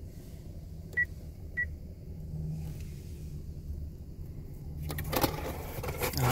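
Car engine idling, a steady low rumble heard from inside the cabin. There are two short high beeps about a second in, and the cardboard pizza box is handled and closed near the end.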